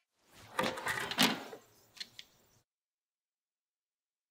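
Plastic vacuum-chamber dome lifted off its base once the vacuum is released: about a second of plastic rubbing and knocking, then two small clicks.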